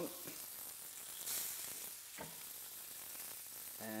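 Paste-coated chicken breasts sizzling steadily on a very hot, oiled ribbed grill plate. The sizzle surges about a second in, as a second breast goes down on the plate.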